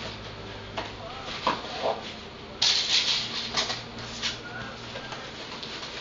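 Handling of a large nylon paintball rolling gear bag: scattered rustling and scraping of the bag and its contents, with a sudden louder scraping burst about two and a half seconds in and a few shorter ones after it.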